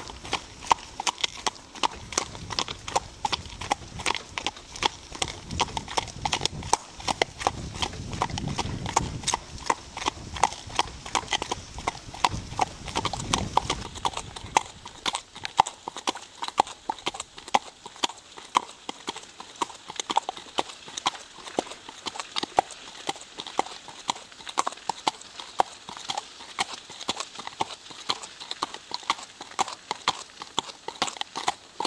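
Curly mare's hooves clip-clopping on a paved road in a steady, even rhythm as she pulls a cart. A low rumble runs under the hoofbeats for several seconds partway through.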